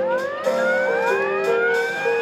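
Marching band music: held notes shifting in steps, with several overlapping pitches sliding slowly upward in the first second, giving a siren-like rise.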